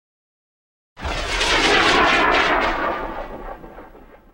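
An intro sound effect: a loud rushing, rumbling noise cuts in sharply about a second in, holds for a second or two, then fades away.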